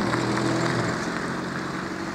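Steady engine drone of a motor vehicle, slowly fading.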